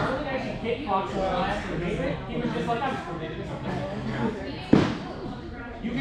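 Indistinct talk of several people echoing in a large hall, with one sharp smack about three-quarters of the way through.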